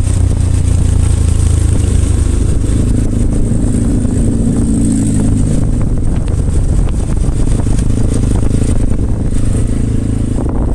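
Motorcycle engine running steadily while riding, under a loud low rumble of wind and road noise, with the engine note stronger for a couple of seconds near the middle.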